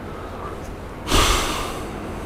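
A person's loud, sudden breath close to a clip-on microphone, about a second in, fading away within a second.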